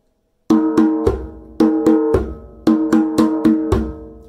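A djembe played by hand in the 'pata-pon, pata-pon, pata-pata-pon' pattern, starting about half a second in. Each group is two or four quick, ringing open tones followed by a deep bass tone, three groups in all.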